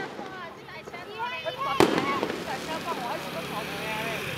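An aerial firework shell bursting with a single sharp bang about two seconds in, over people chattering nearby.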